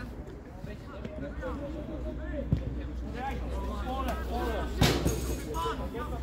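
Football players and coaches shouting and calling out across the pitch, several voices overlapping, with a single sharp thud a little before five seconds in. A steady low rumble lies underneath.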